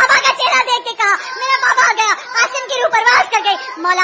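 High-pitched women's voices crying and wailing in mourning, the pitch sliding up and down in short breaking cries.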